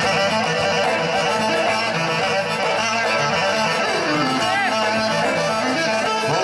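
Live Greek band music played loud through PA speakers, a dense dance tune over a steady rhythm, with a melody line that slides down and back up a little past the middle.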